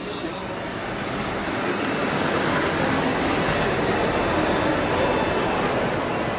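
Busy city street traffic: a steady wash of passing engines and tyres that grows louder over the first couple of seconds.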